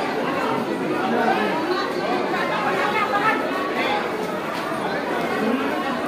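A crowd's overlapping chatter: many people talking at once, with no single voice standing out.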